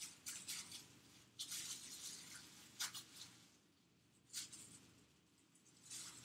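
Faint, soft rubbing and squishing of hands kneading a lump of fondant icing, heard as several short brushing strokes with a small tick about three seconds in.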